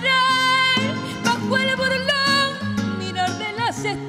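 A woman singing live, holding long notes with a wavering vibrato, accompanied by a Spanish guitar.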